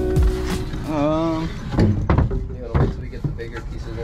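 Background music that stops within the first second, followed by a short wavering vocal sound and a few sharp knocks and clatters of wooden bed rails and boards being laid on a box truck's plywood floor.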